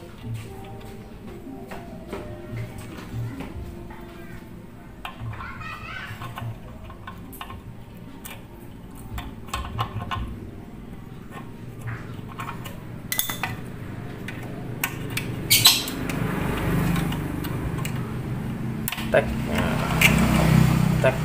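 Small metal clicks and clinks of circlip pliers working a steel circlip onto a Yamaha Mio J's CVT shaft, with a couple of sharper clicks in the second half: the "tek" that marks the clip snapping into its groove on the shaft.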